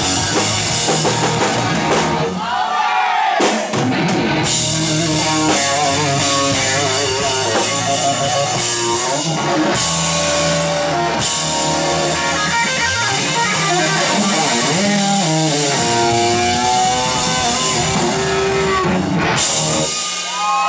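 Live rock band playing: an electric guitar lead full of bends and vibrato over bass guitar and drum kit, loud and steady throughout.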